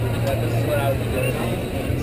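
Busy fairground background: a steady low hum under faint, distant voices.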